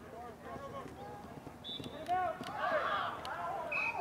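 Distant shouting from football players and coaches across an open field, many voices overlapping and swelling in the second half. Scattered sharp claps, and a short high steady tone near the end.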